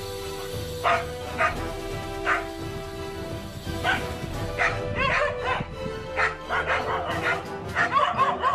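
Dogs barking at a monitor lizard in the water: single barks at first, then coming faster and overlapping in the second half, with a few higher yips, over background music.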